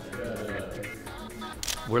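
Background music with a camera shutter click about three-quarters of the way through.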